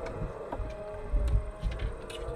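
Irregular dull thumps and light taps of many hands against a car's windows and body, heard from inside the car.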